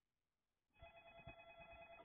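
A telephone ringing faintly through a TV speaker: one steady ring that starts about a second in after a moment of near silence.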